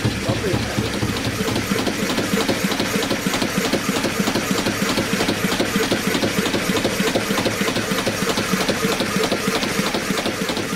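Narrowboat's inboard diesel engine running steadily, heard close up in the engine room as an even, rapid beat of its firing over a low hum.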